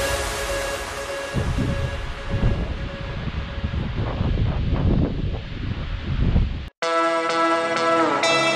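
Electronic dance music fading out under irregular gusts of wind buffeting the microphone, then an abrupt cut, about seven seconds in, to plucked-guitar music.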